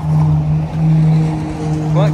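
An engine running steadily: an even low hum that holds one pitch throughout.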